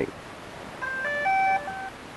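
DJI Phantom 4 quadcopter sounding its electronic beep tune, a quick run of short high notes stepping up and down, starting about a second in and lasting about a second.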